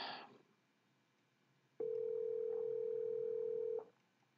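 Telephone ringback tone on a VoIP call: one steady ring about two seconds long, starting about two seconds in.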